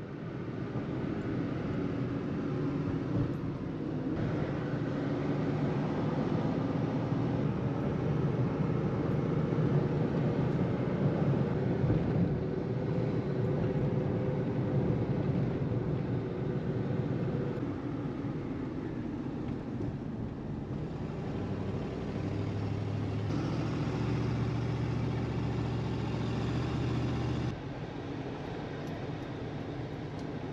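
Car engine and road noise heard from inside the cab while driving on a paved road. A lower, stronger engine note comes in about three quarters of the way through, and the sound drops suddenly near the end.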